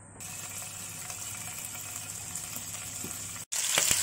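A thin layer of cooking oil heating in a hot nonstick wok, a steady soft sizzling hiss. It cuts out briefly near the end, then comes back louder as the pork belly fries.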